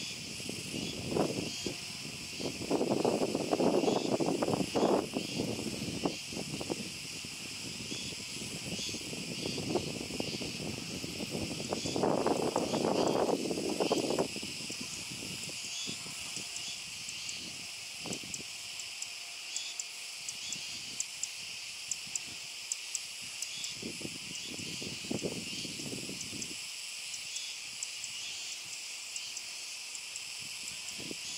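A chorus of Kuroiwa tsukutsuku cicadas (Meimuna kuroiwae) calling loudly and steadily, a high shrill drone in several layers. Two swells of lower rushing noise rise over it in the first half, each lasting about two seconds.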